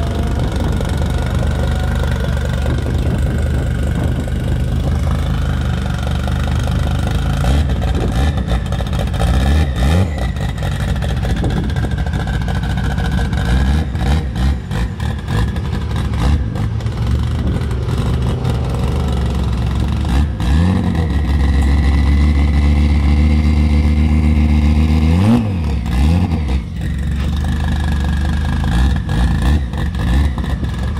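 Turbocharged 2.2-litre 20-valve Audi five-cylinder (AAN) engine idling, with a few short blips of the throttle about ten, twenty and twenty-five seconds in.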